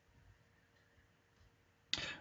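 Near silence: faint room tone with a steady low hum, and a short sudden sound near the end.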